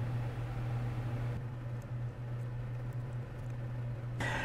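Steady low hum under faint room noise, with no distinct event.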